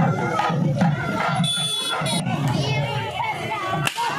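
A crowd of men shouting and cheering over a steady beat that repeats about three times a second. A brief shrill high tone sounds around the middle, and a single sharp crack comes just before the end.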